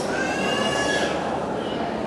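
A child's high-pitched squeal: one drawn-out call that rises and then falls over about the first second, over the murmur of a crowd in a large hall.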